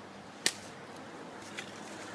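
A single quick slash of a lightweight G10 fiberglass knife into plastic-wrapped pork: one sharp swish-and-hit about half a second in, then a faint tick about a second later. The cut barely bites into the meat.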